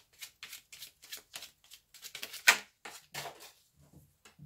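A deck of tarot cards shuffled by hand: a quick run of short card slaps and riffles, about four a second, with one louder slap about two and a half seconds in.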